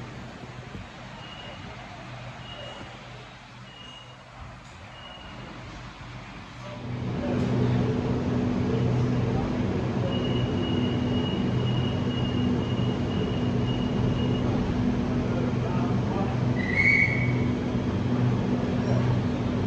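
Stationary electric train's steady low electrical hum, which comes in loudly about seven seconds in and holds. Short high beeps sound a few times in the quieter opening, and a held high tone follows later.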